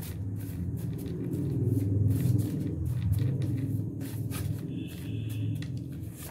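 Tarot cards being shuffled by hand: scattered soft card snaps and rustles over a low, steady rumble.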